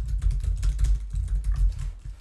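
Typing on a computer keyboard: a quick run of keystrokes, several a second, with dull low thuds under the key clicks.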